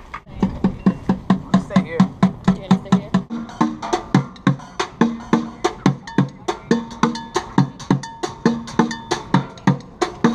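Street busker drumming on upturned plastic buckets, a fast steady beat of about four loud hits a second with lighter strokes between, some hits ringing with a low hollow pitch.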